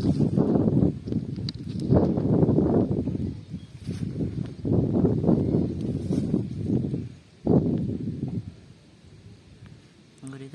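A freshly caught fish thrashing against a nylon cast net and the grass while being picked out by hand: spells of rapid thumping and rustling, four in all, stopping near the end.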